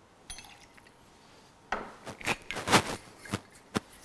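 Bartending clatter: a string of sharp clinks and knocks as metal cocktail shaker tins and bar tools are handled on the bar counter, starting a little under two seconds in.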